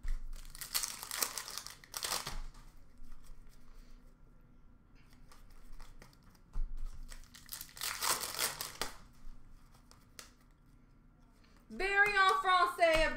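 Foil trading-card pack wrappers crinkling as they are handled, in two loud bursts: one starting about half a second in and another around eight seconds, with quieter rustling of cards between.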